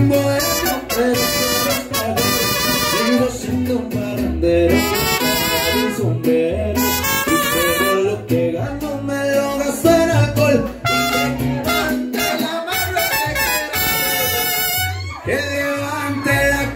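A live mariachi band playing, with trumpets carrying the melody and a singer, a short break in the phrase near the end.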